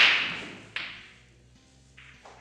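Pool balls cracking apart on a break shot: a sharp loud crack at the start and a second, weaker crack less than a second later, each trailing off.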